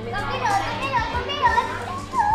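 A young girl's high, sing-song voice in short wordless calls that rise and fall about every half second.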